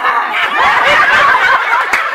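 A group of women laughing together, many voices at once in a loud, sustained burst.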